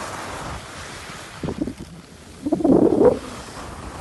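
Wind rushing over the microphone during a fast downhill slide on snow, over a steady hiss of sliding on the piste. Two louder rushes come about one and a half seconds in and again from about two and a half to three seconds.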